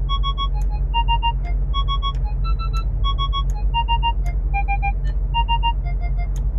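Mercedes-AMG G63 parking-sensor warning tones beeping in quick groups of three, with single beeps between. The pitch steps up and down from group to group as the tone-pitch setting is changed, so the beeps play a simple tune over a steady low hum.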